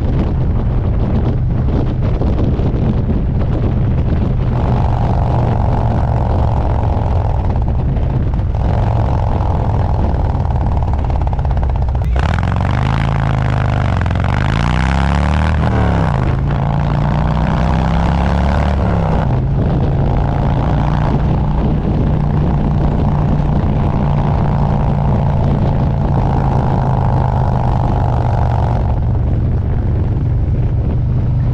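Harley-Davidson Road Glide's V-twin engine running at road speed, with wind rushing over the microphone. About halfway through, the wind noise grows and the engine note dips and then climbs again as the bike slows through a turn and pulls away, before settling back to a steady cruise.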